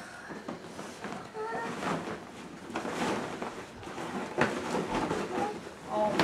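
A large cloth drawstring bag rustling and being handled as small children pull at it and reach inside, with a few sharp knocks and rustles and a brief soft child's voice about a second and a half in.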